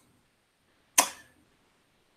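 A single sharp click about a second in, with near silence around it.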